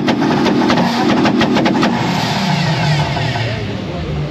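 Tuned car engines held at high revs with rapid sharp pops and crackles, typical of a two-step launch limiter. About halfway through the popping stops and the revs fall away to a lower, steadier note.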